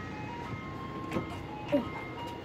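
Soft background music: a simple melody of single pure notes stepping up and down in pitch, like an ice-cream-van chime tune.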